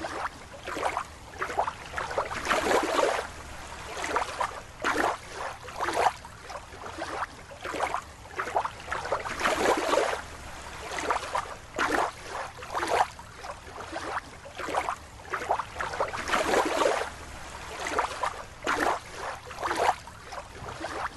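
Water sloshing and swishing in irregular surges, each lasting a fraction of a second to about a second.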